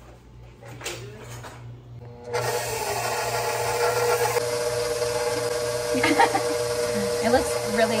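Stand mixer running with its flat beater working flour and liquid into a thin cake batter. It hums quietly at first, then about two seconds in it gets much louder, with a steady whine that holds.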